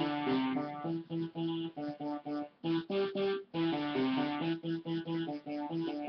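Electronic keyboard played by hand: a simple tune of single held notes, one after another with short breaks between them.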